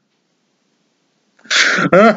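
Silence for over a second, then near the end a man sneezes once, loudly, with a sharp breathy burst followed by a voiced catch.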